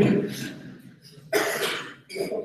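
A single short, sharp cough about a second and a half in, after a man's speech trails off.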